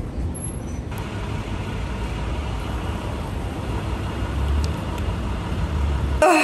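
City street noise: a steady rumble of passing road traffic.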